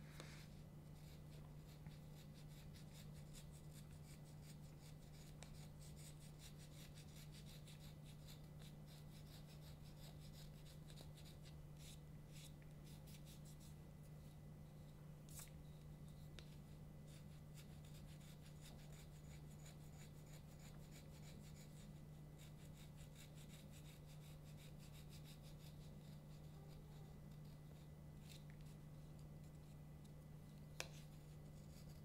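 Faint, quick repeated scraping of a knife blade shaving cane, profiling a tenor krummhorn reed on its easel, with a few sharper clicks of the blade. A steady low hum runs underneath.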